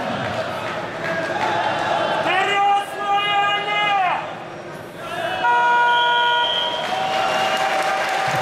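Arena horn or buzzer sounding over crowd noise: the signal ending the wrestling period. There is one held tone of nearly two seconds about two seconds in, then a shorter, flat, steady buzz about five and a half seconds in.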